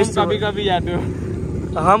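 A man speaking briefly, then a steady low rumble of the engines of rental jeeps, quad bikes and motorbikes.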